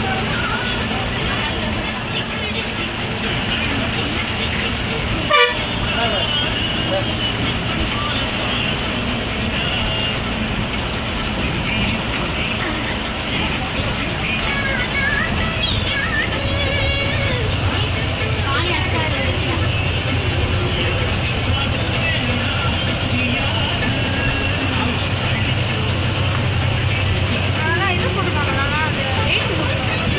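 Inside a moving bus: steady engine and road noise whose low rumble grows louder past the middle, with voices in the background and horn toots. A single sharp knock about five seconds in.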